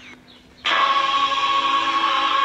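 Vega RP-240 portable radio being tuned across the dial: a brief quieter gap between stations, then a music broadcast comes in suddenly about two-thirds of a second in, with steady held notes.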